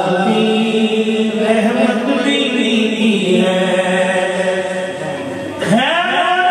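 A man singing an Urdu naat unaccompanied into a microphone, drawing out long, ornamented held notes in one melodic line. Near the end the line breaks off briefly and a new phrase starts with a rising slide.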